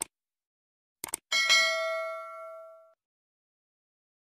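Sound effects from a subscribe-button animation. A mouse click comes at the start and a quick double click about a second in. Then a single bright notification-bell ding rings out and fades over about a second and a half.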